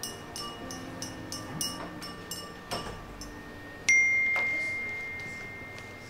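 Soft background music, then about four seconds in a single bright phone notification ping for an incoming text message, ringing out and fading over about two seconds.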